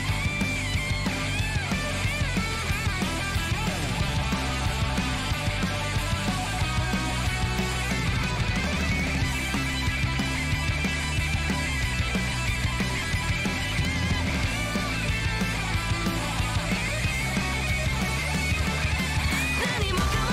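Hard rock band music with an electric guitar solo over drums and bass guitar.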